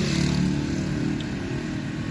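Motorhome driving at low speed, heard from inside the cab: a steady engine and tyre rumble, a little louder in the first second.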